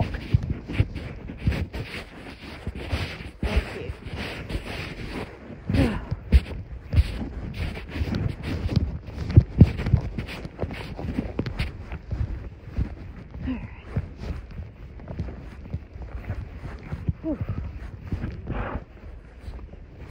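Hoofbeats of a ridden horse on a dirt trail, heard as irregular knocks, mixed with clothing rubbing against the body-worn camera's microphone. A breathy "whew" from the rider near the end.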